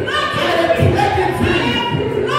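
Group of voices singing a worship song in long held notes, with a woman's voice carried over the microphone.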